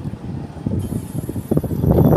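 Daikin VRV III outdoor condensing unit running, its fan and inverter compressor going, with an uneven low rumble and a steady high-pitched whine that sets in just under a second in. The unit is back in normal operation after its faulty discharge pipe thermistor (error J3) was replaced.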